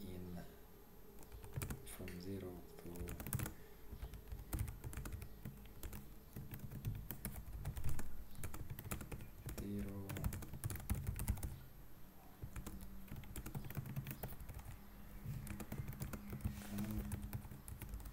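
Computer keyboard typing: irregular runs of keystroke clicks with short pauses between them.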